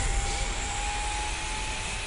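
Title-sequence sound effect: a steady rushing, engine-like rumble with a thin high tone held underneath that creeps slowly upward in pitch.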